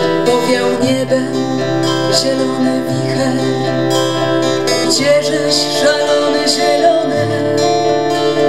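Two acoustic guitars playing an instrumental passage of a song, the chords and bass notes changing about every two seconds.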